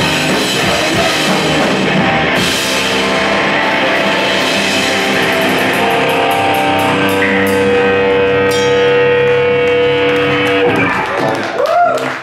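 Live rock band of electric guitars and drum kit playing loudly, with a long sustained guitar note through the second half. The song ends a little before the close and gives way to crowd cheering.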